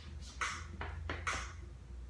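Faint count-in: short hissy ticks in a steady beat, about two a second, over a low hum, just before strummed acoustic guitar comes in with a backing track.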